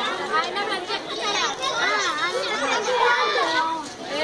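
A group of children chattering and calling out, many voices overlapping at once.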